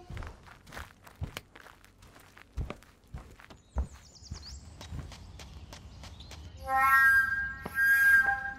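Footsteps, a slow, uneven series of soft knocks, as a figure walks off. About seven seconds in, a flute melody comes in louder.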